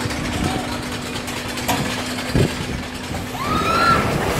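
Drop-tower fairground ride's machinery giving a steady low hum, which stops a little over three seconds in, with a brief low thump a little past halfway. A voice rises in pitch near the end.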